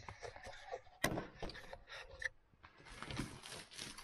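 Faint handling noise: scattered clicks and knocks, a sharp click about a second in, then crinkly rustling near the end as comics in plastic bags are moved.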